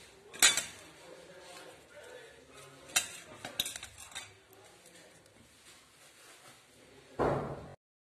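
A few sharp metallic clinks against a pressure-cooker pot, one about half a second in and a cluster around three to four seconds, then a short louder knock near the end.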